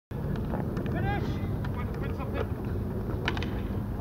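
Wind rumbling on the microphone at an outdoor field hockey match, with distant players' shouts about a second in and a few sharp clicks.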